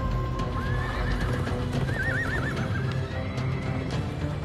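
A horse whinnies: a rising call about half a second in, then a quavering one about two seconds in, over background music.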